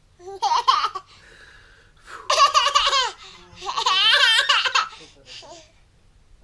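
A baby laughing in three high-pitched, wavering bursts, the second and third longer than the first.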